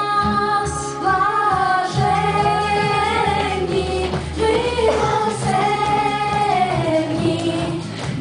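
A group of children singing a song together over instrumental accompaniment with a steady bass line.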